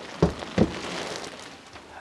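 Two short knocks about a third of a second apart, then faint rustling.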